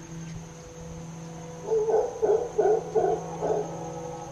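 An animal gives five short hooting calls in quick succession, about two and a half a second, starting a little under halfway in, over a faint steady drone.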